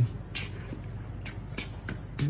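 A man beatboxing: a few sharp, hissing snare-like mouth sounds in a loose beat.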